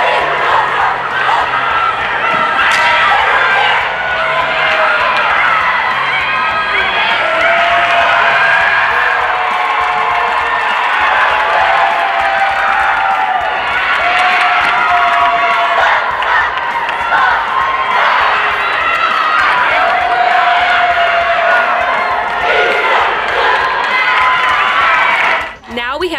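A cheerleading squad shouting a cheer in unison, with long drawn-out syllables and some cheering behind it. The chant stops suddenly near the end.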